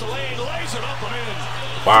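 NBA game broadcast audio: a commentator talking at a lower level over a steady low hum. Near the end a man's loud exclamation, "wow", cuts in.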